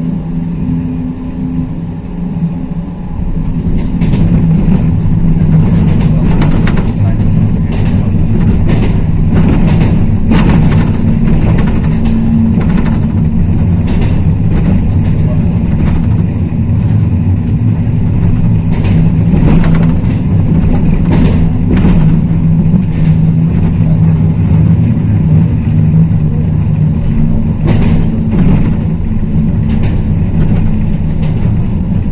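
Inside a Pesa Fokstrot 71-414 tram running along the line: a loud, steady low drone from the running gear and traction drive, growing louder about four seconds in, with scattered sharp clicks and knocks from the wheels on the track.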